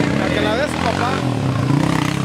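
A vehicle engine running steadily, with women's voices calling out and laughing over it about half a second to a second in.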